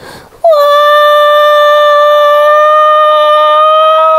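A voice holding one long, loud, high-pitched wail, like a cry, starting about half a second in and staying on one note throughout.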